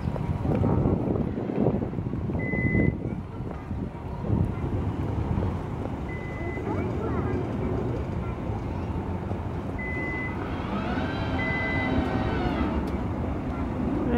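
A work truck's warning beeper sounding single high beeps a few seconds apart, over wind noise and a low engine rumble; a pitched engine note swells and fades about eleven seconds in.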